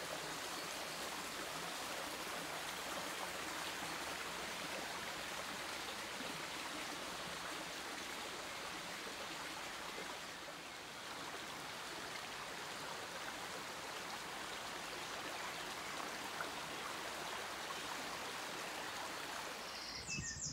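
A small stream running: a steady, even rush of water that dips slightly about ten seconds in.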